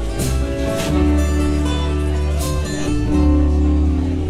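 Live acoustic rock band playing a song: acoustic guitar strumming over a bass line, with long held notes sounding above it.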